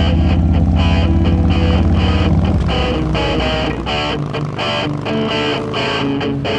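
Electric guitar rock music, with a touring motorcycle's engine running heavily underneath for the first two and a half seconds or so before it fades away.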